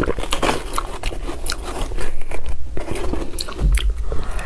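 Close-miked chewing and biting of spoonfuls of juicy watermelon flesh: a run of short, wet crunches.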